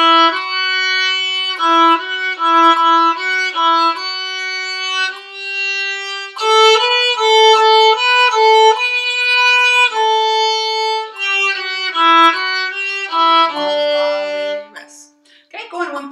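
Solo violin playing a slow exercise melody in separately bowed notes, the pitch stepping from note to note, until about a second before the end, when the playing stops.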